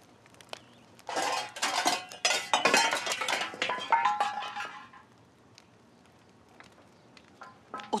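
Metal pots, pans and utensils clattering and crashing down, starting about a second in and lasting about four seconds, with a ringing metal tone as it dies away.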